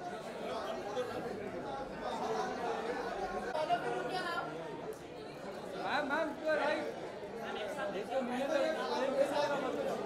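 Crowd chatter: many overlapping voices talking at once, none standing out clearly.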